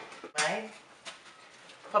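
A woman's voice gives a brief hummed sound about half a second in, then there is quiet room tone with a faint click. She starts speaking again at the very end.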